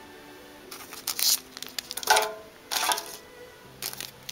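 Foil trading-card booster pack crinkling and rustling in several short bursts as it is picked up and handled, over faint background music.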